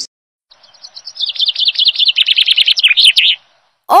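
Weaver bird chattering: a rapid run of high, chirps that starts about half a second in, grows louder, and stops shortly before the end.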